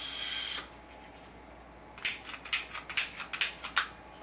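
Kitchen torch that won't stay lit: a hiss of gas stops about half a second in, then from about halfway a quick run of igniter clicks, about five a second, that fail to light it.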